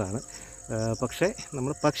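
A man talking, over a steady high-pitched insect chorus from the grass: one continuous trill and, below it, a chirp repeating several times a second.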